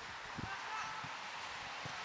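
Quiet outdoor background: a steady hiss, with a brief faint call just before the middle and a soft low thump early on.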